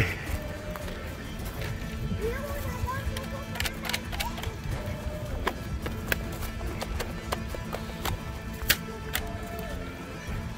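Running footsteps on a dry, leaf-littered dirt trail, as irregular crunches and clicks, under steady background music.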